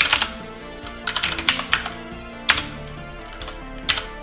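Typing on a computer keyboard: a quick run of keystrokes about a second in, a single key around the middle and another near the end, over soft background music.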